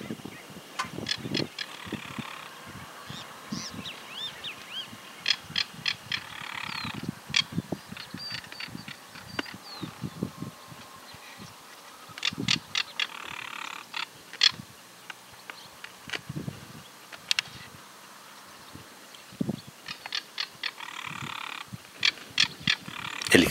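Southern crested caracaras calling: harsh, dry, rattling calls in several bouts, with many sharp clicks between them.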